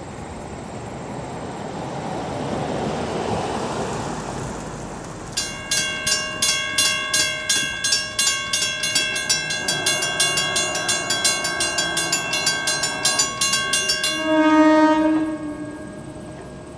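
A car passes over the crossing, then about five seconds in the crossing's Western Cullen Hayes mechanical bells start ringing, a steady rapid clanging that warns of an approaching train while the gates come down. The bells stop about two seconds before the end, and a short blast of the approaching NJ Transit Arrow III train's horn follows, the loudest sound.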